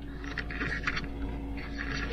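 A steady low hum with a faint higher tone held underneath it, and faint rustling from handling.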